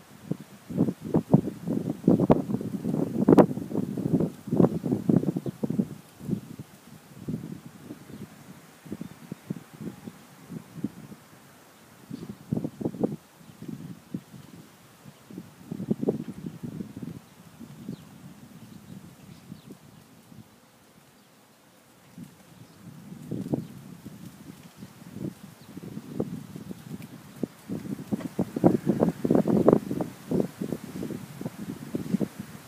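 Hoofbeats of a horse galloping on a dirt track: a fast run of dull thuds, loudest in the first six seconds and again near the end as the horse passes close, with scattered, fainter hoofbeats in between.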